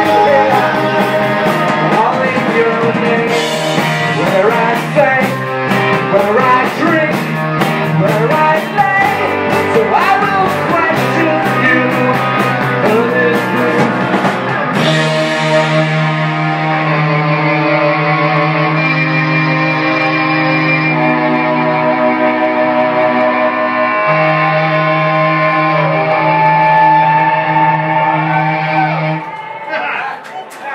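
Live indie rock band playing, with electric guitars, bass, drums and male lead vocals. About halfway through, the drums and singing drop out and sustained electric guitar chords ring on, changing chord every few seconds, until the song ends just before the close.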